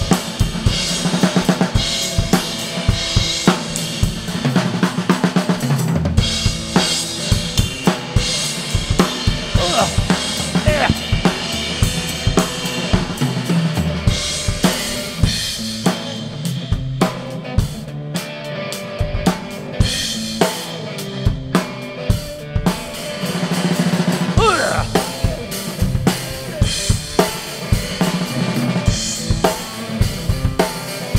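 A drum kit and an electric guitar jamming together. The drums keep a steady beat on bass drum, snare and cymbals under the guitar's playing, with a sliding guitar note about three-quarters of the way through.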